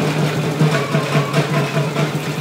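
Small goods truck's engine running steadily at idle, mixed with music and the general din of a crowd.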